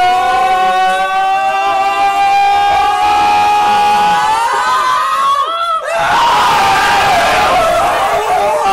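Several young men screaming together. One long held scream rises slowly in pitch over about five seconds, then breaks off, and a rougher burst of several voices shouting at once follows.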